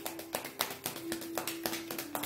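A deck of tarot cards being shuffled by hand: a quick, uneven run of sharp card taps and flicks, about five or six a second.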